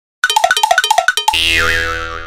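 Short musical intro sting: a quick run of short pitched notes, then one sustained chord with a wavering, springy upper tone that begins to fade near the end.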